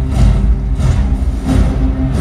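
Loud march music played over speakers, with heavy bass and a steady beat about twice a second.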